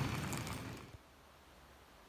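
Outdoor airport apron noise, a steady rumble and hiss, fading out about a second in; then near silence, the quiet tone of a room.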